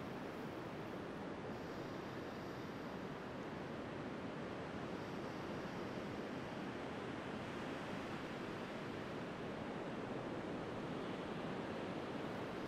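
Sea surf washing in, a steady even hiss with no single wave standing out.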